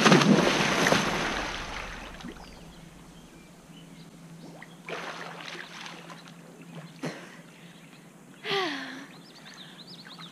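A person plunging into a swimming pool off a diving board: a loud splash at the start that fades over about two seconds, then quieter water sloshing. Near the end a short gasping breath as she comes up.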